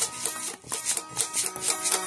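Red Stratocaster-style electric guitar, played unplugged: chords strummed in a steady rhythm, about four strums a second, with a bright, thin, scratchy pick-on-string attack.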